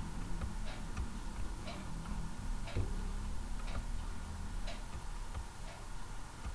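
Regular ticking, about one tick a second, over a low steady hum.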